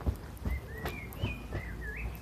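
A run of clear whistled notes, each sliding up or down, following one another for most of the two seconds, the last rising sharply and then held.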